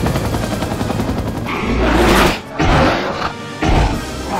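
Mixed action-film soundtrack under orchestral score: rapid automatic gunfire tails off in the first second, then three loud rushing surges of noise follow from about a second and a half in.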